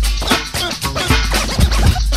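Old-school hip hop beat with turntable scratching: a vinyl record scratched back and forth in short pitch glides over a drum beat with heavy bass.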